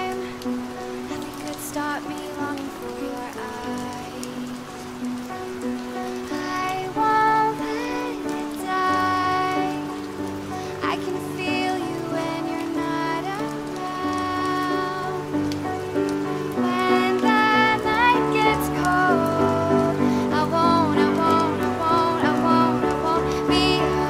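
Steady rain falling, mixed over an acoustic ballad in which a female voice sings long held notes over soft chords.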